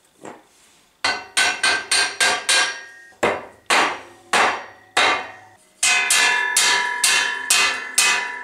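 Hammer blows on steel as a steel centre pipe is driven into the hub of a plasma-cut 4 mm steel drum side. At first come quick strikes, about four a second; then slower blows about every half second. In the second half the steel rings on after each blow.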